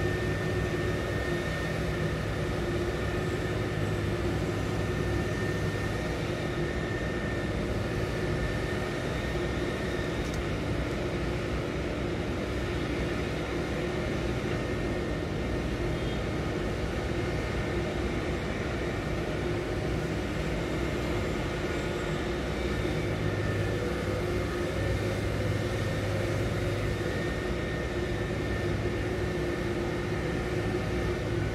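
Cargo crane machinery running steadily as it hoists a grab loaded with grain: a continuous hum with two steady whining tones, one low and one high.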